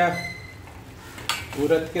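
Steel ladle stirring dal and spinach in a steel kadhai, the mixture sizzling as it fries in the hot tempering, with one sharp clink of the ladle against the pan a little over a second in.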